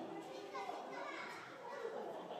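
Background chatter of onlookers with children's voices among it, faint and indistinct.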